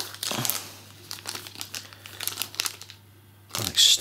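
Clear plastic wrapping around a power adapter and cables crinkling and rustling as they are handled and lifted out of a cardboard box, with small irregular clicks.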